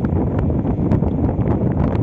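Strong sea wind buffeting the microphone: a loud, steady rumble with scattered small crackles.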